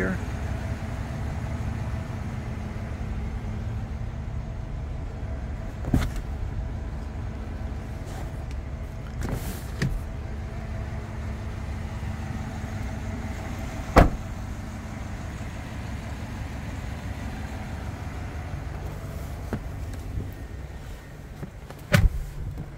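Steady low hum of a pickup truck's engine idling, with a few light clicks and knocks scattered through it and one sharp knock at the very end.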